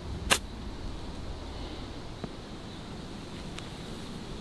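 A golf club striking a ball on a short chip shot from the rough: one sharp click about a third of a second in, over a low steady rumble.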